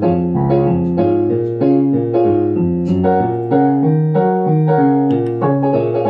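Kurtzman K650 digital piano's built-in auto-accompaniment playing its Jive style: piano-voiced chords over moving bass notes in a steady, repeating rhythm.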